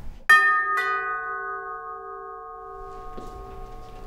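Two-note doorbell chime: two struck tones about half a second apart, ringing on and slowly fading over about three seconds.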